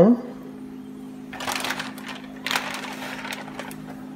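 Seasoned pork belly pieces set into a pot of water: two short splashing rustles, about a second apart, over a steady low hum.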